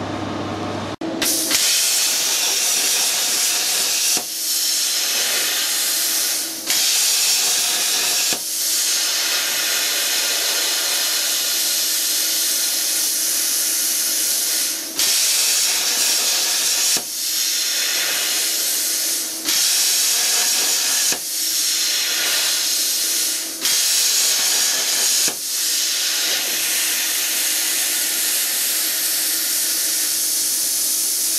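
CNC plasma cutter torch cutting sheet steel: a loud, steady hiss of the plasma arc that starts about a second in and cuts out briefly every few seconds as the torch finishes one cut and starts the next.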